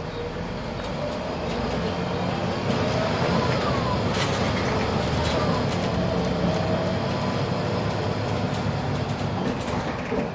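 Inside a Volvo 7000 city bus under way: the diesel engine and road noise grow louder over the first few seconds as the bus gathers speed, then run steadily. A faint whine glides up and down in pitch, with scattered clicks and knocks from the cabin.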